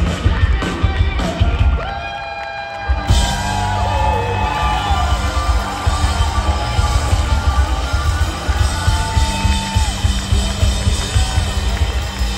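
Blues-rock band playing live through a hall PA: bass, drums and guitar under gliding lead lines from an amplified harmonica. The band thins out about two seconds in and comes back in full at three.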